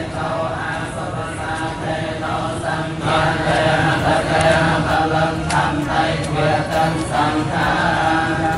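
Theravada Buddhist chanting by a group of monks and lay worshippers, many voices reciting together in a steady unison drone, growing louder about three seconds in.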